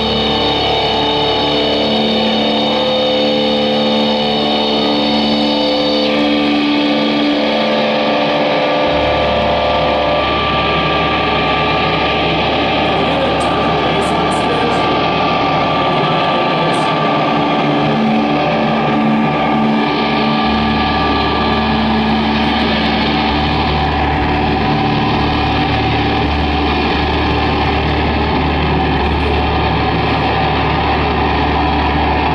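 Live band playing loud, distorted, droning music: electric guitar with held notes that change every few seconds over a steady deep bass, with no clear drumbeat.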